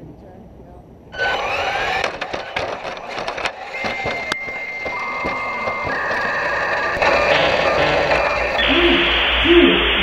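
Onboard audio of a small robot car on asphalt: loud rattling and knocking start about a second in and run on through a crash into a chain-link fence. Steady electronic tones play over it and step from one pitch to another every second or so, ending in a burst of static.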